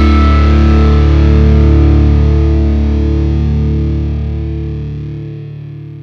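Final distorted electric guitar chord of a rock song, held and ringing out over a low bass note, fading away over the last couple of seconds.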